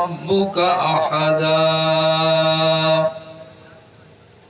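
A man's voice chanting melodically through a microphone and loudspeaker, with ornamented wavering turns at first, then one long steady held note that breaks off about three seconds in.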